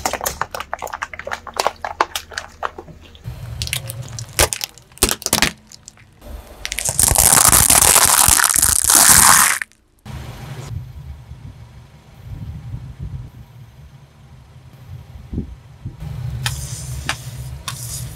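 A car tyre rolls slowly over water balloons and slime toys on wet paving with many sharp crackles and wet squishes, then a loud hiss for about three seconds. After a cut, the tyre creeps onto small juice cartons on asphalt over a low, steady rumble, with more crackling and a carton bursting and squirting juice near the end.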